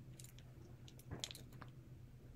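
Faint, scattered little clicks of faceted red glass beads knocking together as the necklace is wound around the fingers.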